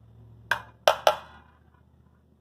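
Steel AR-15 magazines knocking together in the hand: three sharp metallic clacks with a short ring, the last two in quick succession.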